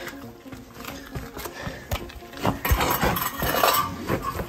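Stainless-steel Hydro Flask water bottle scraping and clinking against granite rock in short scrapes, becoming louder and denser about two and a half seconds in.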